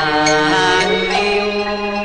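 Cantonese opera music: a melody of long, sliding held notes over a traditional instrumental accompaniment, playing on without a break.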